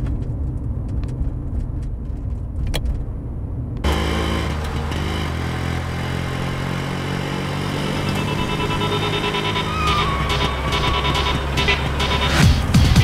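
Low, steady car engine rumble heard from inside the cabin, with a few faint clicks. About four seconds in, film-score music with a heavy bass comes in over the vehicle sound.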